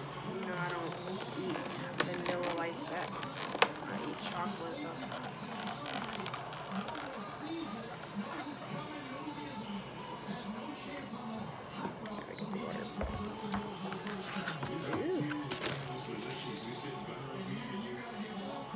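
Voices and music playing in the background, with sharp clicks and crackles of a plastic clamshell cake container and plastic wrap being opened and handled.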